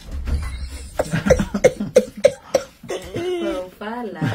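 A woman laughing in a run of about six short bursts, roughly three a second, followed by a held vocal sound.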